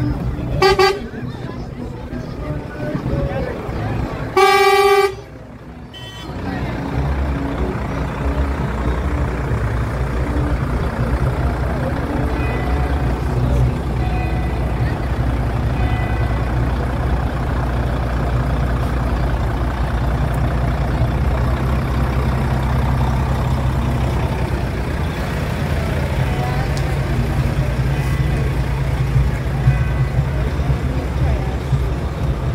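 A truck horn sounds twice: a short toot, then a louder blast lasting about half a second some four seconds in. After it the truck's engine rumbles steadily at low revs as the vehicle crawls past close by.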